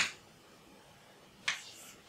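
Chalk striking a blackboard as symbols are written: two short, sharp taps, one at the start and one about one and a half seconds in.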